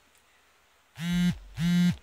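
A mobile phone vibrating on a table: two short buzzes about half a second apart. Each rises to a steady pitch, slides down as it stops, and has a low rattle under it.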